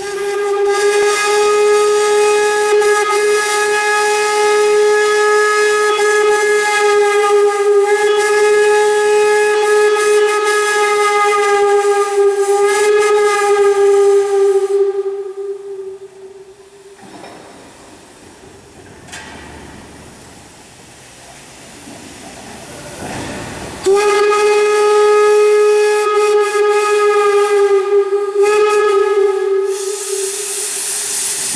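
Steam locomotive whistle blowing two long, steady blasts. The first lasts about fifteen seconds and the second starts about six seconds before the end, with a quieter hiss of steam in the gap between them.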